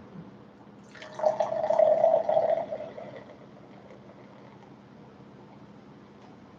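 Carbonated pear cider poured from a can into a glass. The pour starts about a second in, is strongest for about two seconds, then fades out.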